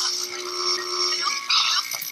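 High-pitched electronic buzzing and static from a horror film soundtrack: interference on a phone line, with steady whining tones over a hiss. It cuts off suddenly at the end.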